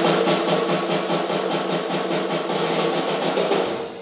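Live rock band playing a loud crashing passage: a fast drum roll with cymbals under sustained amplified chords, dying away and stopping just before the end.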